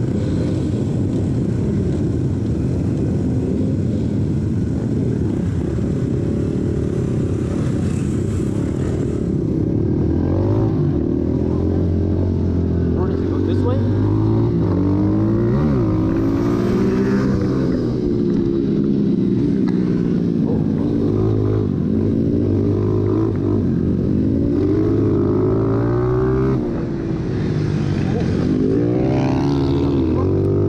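SSR150 small-wheel pit bike's air-cooled single-cylinder four-stroke engine, heard close up from the handlebars. For the first nine seconds or so it runs steadily amid other motorcycles. It then pulls away and revs up and down over and over as it accelerates and rolls off for turns.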